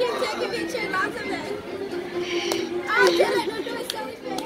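Indistinct chatter of several voices at once, children among them, with a couple of short sharp clicks in the second half.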